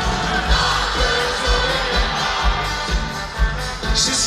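Loud live pop music over a concert sound system, with a steady kick-drum beat about twice a second and crowd voices singing along, heard from among the audience.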